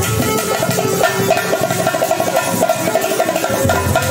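Instrumental interlude of Haryanvi ragni accompaniment: a harmonium plays a melody of quick repeated notes over steady dholak and nagara drumming.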